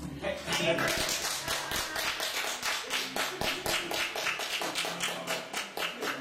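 Small audience applauding at the end of a song, individual hand claps distinct and uneven.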